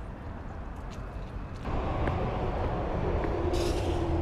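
Highway traffic, with a semi-trailer truck going by on the road; the road noise swells up about halfway through and stays loud, with a steady hum joining near the end.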